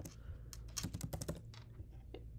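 Typing on a computer keyboard: a handful of quiet, irregular keystrokes.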